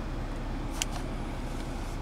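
Steady low hum inside a car's cabin, with one short click just under a second in.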